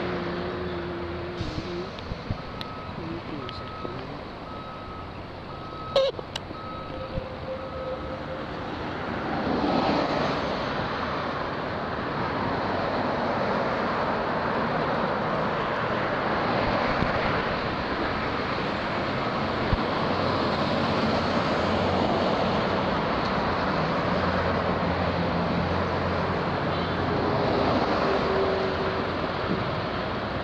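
Road traffic passing steadily, with a construction vehicle's reversing alarm beeping on one pitch about once every 0.7 s through the first eight seconds or so. A sharp knock comes about six seconds in, and the traffic noise grows louder around ten seconds and stays there.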